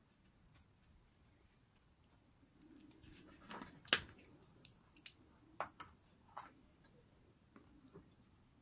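Faint scraping rustle of fine sand and glitter in a plastic tub, then one sharp click and several lighter clicks as metal tweezers are picked up and worked in the tub.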